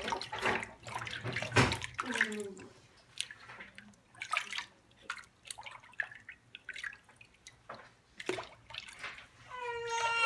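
Bath water splashing and dripping in short irregular bursts during a bath, with a short whimper about two seconds in.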